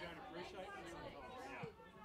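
Several people talking indistinctly: background chatter.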